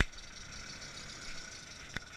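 Land Rover Discovery engine running at low revs as the 4x4 crawls slowly past, steady throughout. There is a sharp knock right at the start and a lighter click near the end.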